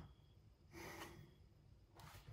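Near silence, with one faint breath about a second in.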